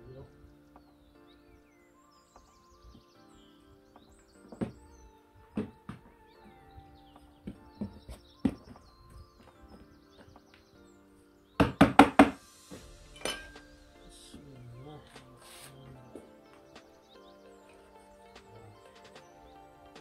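Background music with sustained notes, over which a hand trowel works compost in a plastic tub, giving scattered sharp knocks. About twelve seconds in comes a quick run of four loud knocks, the loudest sound.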